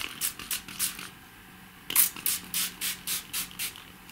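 A small water spray bottle (mister) spritzing water onto card. It gives short, quick hissy pumps: a few in a row, a pause of about a second, then a faster run of about eight.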